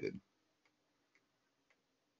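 Faint, evenly spaced ticks of a computer mouse scroll wheel, about two a second, as a results list is scrolled.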